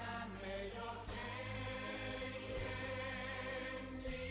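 Quiet background music of a choir singing slow, held chords that change every second or so.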